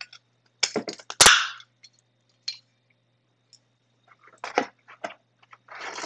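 A stainless-steel espresso basket clinking into a metal portafilter, with a sharp metallic click about a second in, followed by lighter handling ticks and the crinkle of a plastic bag as parts are taken out of the box.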